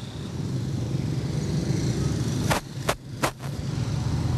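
Steady low rumble of slow, congested road traffic with engines running. Three sharp clicks come in the second half.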